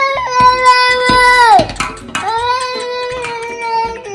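A young child wailing in two long, held cries, each falling in pitch at its end.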